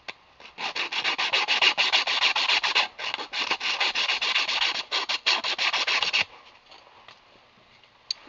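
Fine sandpaper rubbed back and forth around the end of a copper pipe in rapid strokes, scuffing the copper clean to prepare it for flux and solder. The strokes pause briefly twice and stop about six seconds in.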